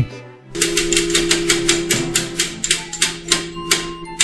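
Game-show prize wheel spinning: its pointer clicks rapidly against the pegs, and the ticks gradually slow as the wheel loses speed.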